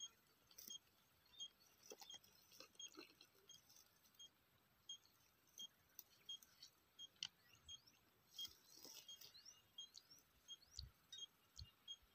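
Near silence broken by faint, short, high ticks at one steady pitch, repeating every half second to a second, with scattered light clicks, a few brief rising chirps about eight seconds in, and two soft low thumps near the end.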